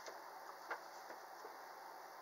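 Quiet room tone with one faint click a little under a second in.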